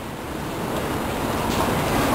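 Train noise on a station platform: a steady rumble that grows slowly louder.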